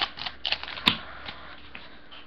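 Foil Yu-Gi-Oh! booster pack crinkling as it is opened by hand. There are a few sharp crackles in the first second, then a faint rustle.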